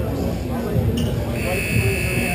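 Rink scoreboard buzzer: a short high blip about a second in, then a steady high-pitched tone starting about one and a half seconds in, over players' voices.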